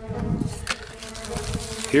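A steady buzzing hum holding one unchanging pitch, with a faint click about two-thirds of a second in.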